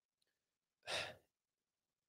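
A single short breath into a close microphone about a second in, with near silence either side.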